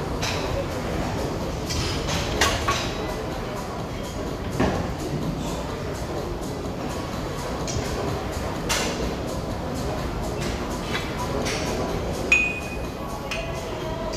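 Steady gym background noise with scattered knocks and metallic clinks from loaded barbells being lifted and set down, and a brief ringing clink near the end.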